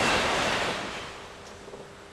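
A large group of karateka moving in unison on a count: a rushing wash of cotton uniforms swishing and feet shifting on the mats. It is loudest at the start and fades away over about a second and a half.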